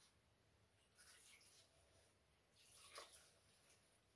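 Near silence, with faint soft rustles of a hand working flour in a wooden bowl, once about a second in and again near three seconds in.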